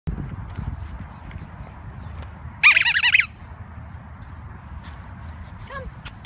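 A short burst of about four quick, high-pitched squeaks, each rising and falling in pitch, about two and a half seconds in, over a steady low outdoor rumble.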